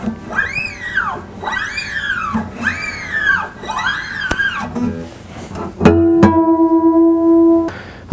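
A steel-string acoustic guitar string is stretched by hand four times after retuning, and its pitch rises and falls with each pull. About six seconds in, two natural harmonics are plucked and ring together as a tuning check.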